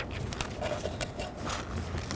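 Outdoor background with a low steady rumble and scattered small clicks and knocks, with no single clear source.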